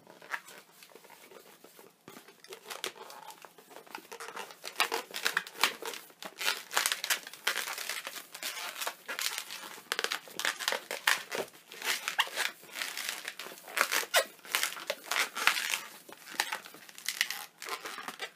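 A long latex modelling balloon being twisted and handled: a busy run of short rubbing and squeaking sounds as bubbles are twisted and locked together. The sounds are sparse for the first few seconds and grow busy after that.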